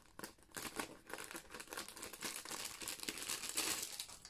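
Clear plastic bag crinkling and crackling as it is handled and pulled open, in irregular bursts that grow louder toward the end.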